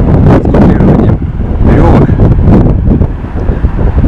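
Wind buffeting the microphone: a loud low rumble that rises and falls with the gusts.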